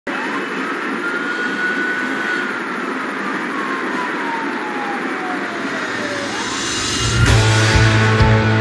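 Intro of an indie rock song: a single slow siren wail, rising, sliding down over several seconds and rising again, over a steady hiss. About seven seconds in the full band comes in with bass and drums.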